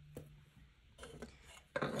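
Faint rubbing and light tapping of objects being moved and slid across a wooden desktop, with a soft tap just after the start and quiet scraping about a second in.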